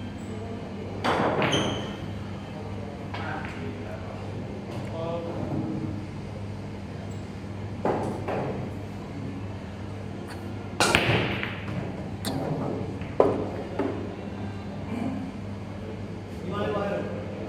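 Pool break shot: the cue ball smashes into the racked balls with a loud crack about eleven seconds in, followed by the balls clacking against each other and the cushions for a couple of seconds. A couple of sharper knocks come near the start.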